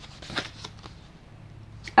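Paper cards and envelopes being handled: a few faint rustles and light taps, the loudest about half a second in.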